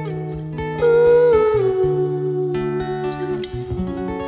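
Two acoustic guitars playing a slow, gentle passage, with a wordless hummed melody held over them from about a second in.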